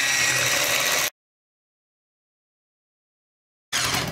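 Electric hand mixer running with a steady whir, its beaters whipping eggs and sugar in a glass bowl until pale and frothy; it cuts off abruptly about a second in.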